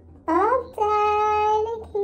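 A high, sing-song voice draws out a word: it glides up quickly, then holds one steady pitch for about a second. Another call begins just as it ends.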